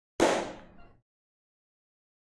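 A single sharp bang that dies away within about a second.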